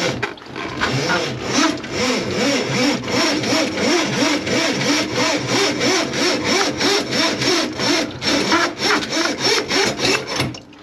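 Hand saw cutting with quick, even back-and-forth strokes, about three to four a second, each stroke with a short rising squeal.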